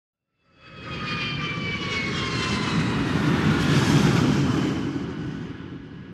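An aircraft flying past: engine noise swells in, is loudest about four seconds in, then fades, with a high whine that slowly falls in pitch as it goes by.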